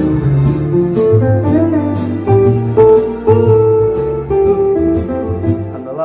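Orla GT8000 Compact organ's built-in auto-accompaniment playing a standard swing backing: a steady beat with a moving bass line and chords.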